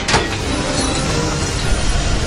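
Heavy machinery running with a steady low rumble, after a sharp metallic knock just at the start.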